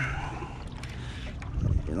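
Water sloshing around a small boat's hull on open water, with wind and a steady low rumble, and a few faint clicks about halfway through.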